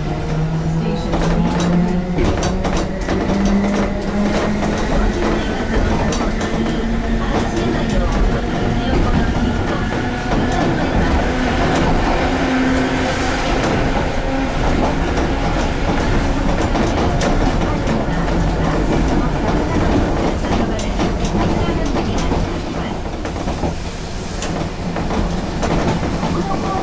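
Mobo 621-series tram running, heard from inside the cab: its traction motors whine, rising in pitch over the first dozen seconds as it accelerates away from a station, while the wheels click over the rail joints.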